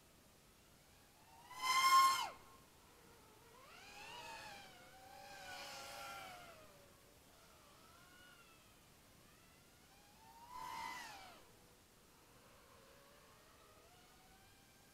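X210 FPV quadcopter's motors whining in three bursts, the pitch gliding up and down with the throttle. The first burst, about two seconds in, is the loudest and ends with a quickly falling pitch.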